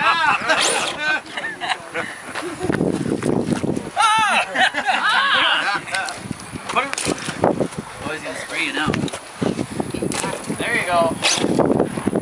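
Overlapping voices of several people talking and calling out, with no clear words.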